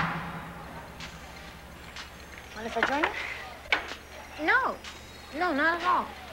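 Indoor cafeteria background: indistinct voices in short phrases, with a few light clicks and clatters of tableware, over a steady low hum. Music cuts off right at the start.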